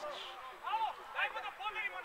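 People talking, their voices carrying over the football pitch; only speech is heard.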